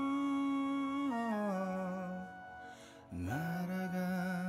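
A man singing a slow ballad into a studio microphone, holding long notes. The pitch steps down about a second in, the note fades near three seconds, and a new note scoops up into a held tone just after.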